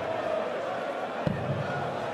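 A steel-tip dart thuds into a Unicorn Eclipse HD2 bristle dartboard once, about a second and a quarter in, over steady arena crowd murmur.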